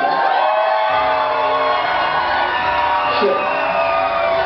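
Live hip-hop show music playing loudly in a club while the crowd whoops and cheers. The bass drops out for about the first second, then comes back in.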